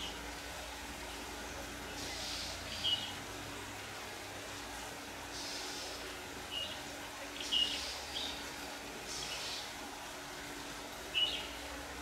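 Red-whiskered bulbuls calling: short, sharp chirps every couple of seconds, about five of them, with softer calls in between.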